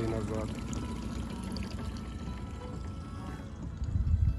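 Water running and splashing steadily, with music playing along.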